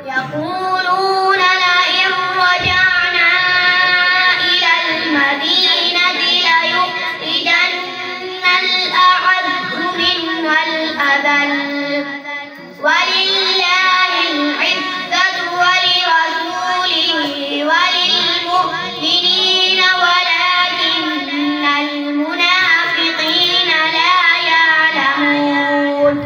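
A boy reciting the Quran in a melodic chant (tilawat) into a microphone, with long held, ornamented notes and a short break for breath about halfway through.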